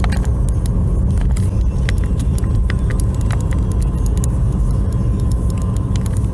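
Road noise inside a moving car's cabin: a steady low rumble with scattered light clicks and rattles.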